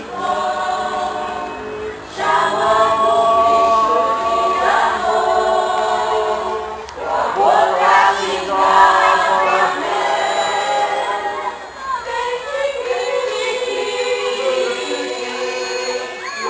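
Mixed-voice Catholic community choir singing held notes in phrases, with brief breaks between phrases about 2, 7 and 12 seconds in.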